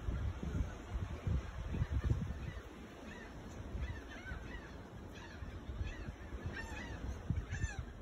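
Red-billed tropicbirds at the nest giving short, harsh, arched calls again and again in clusters from about three seconds in, agitated at being approached. Low rumbling bumps on the microphone in the first few seconds.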